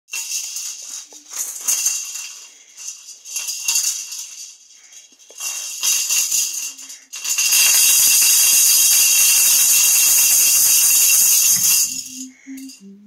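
A pair of yellow plastic toy maracas shaken by a toddler: irregular shakes of rattling for the first seven seconds or so, then fast, continuous rattling that runs until just before the end.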